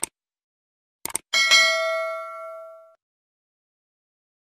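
Subscribe-button sound effects: a mouse click, then two quick clicks about a second in, followed by a notification bell ding that rings for about a second and a half and fades away.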